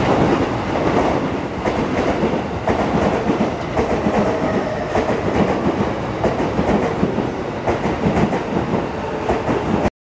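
E233-series electric commuter train passing close by, with a steady running noise and wheels clicking over rail joints every second or so. The sound cuts off abruptly at the very end.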